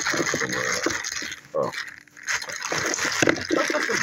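Clear plastic packaging crinkling and rustling as it is handled and pulled open by hand.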